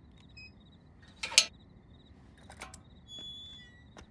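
A metal gate clatters sharply about a second in and a few lighter clicks follow. Near the end an electronic gate lock beeps. Crickets chirp faintly throughout.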